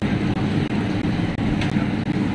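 A motor vehicle engine running steadily amid street noise, a low even rumble with a faint held hum.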